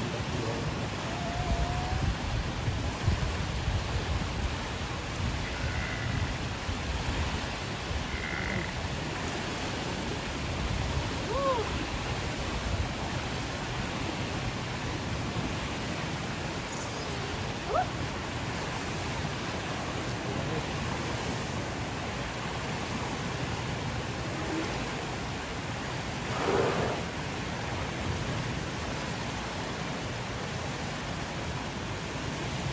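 Steady outdoor wash of water and wind noise, with a few faint short chirps scattered through it and a brief rush of noise near the end.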